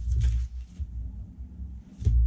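Low, dull thuds and rustling from hands handling something on a tabletop: a heavy burst in the first half-second, softer knocks through the middle, and another heavy thud at the very end.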